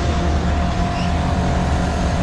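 Fairground machinery running with a steady low hum and a thin steady whine over a haze of noise.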